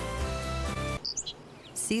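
Instrumental music that stops abruptly about a second in, followed by a few brief high bird chirps before a voice begins.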